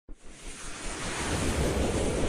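A rushing swell of noise with a low rumble, building up from silence: the opening whoosh sound effect of an animated logo intro.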